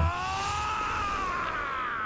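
Anime character's long, high-pitched drawn-out yell of 'nooo', rising slightly in pitch and then sliding down as it fades near the end.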